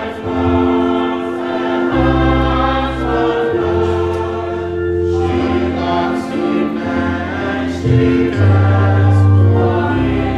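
A congregation singing a hymn together in slow, held notes over instrumental accompaniment with long, deep bass notes.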